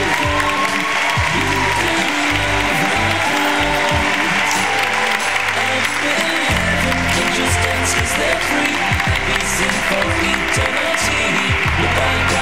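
Music playing under a large audience's sustained applause.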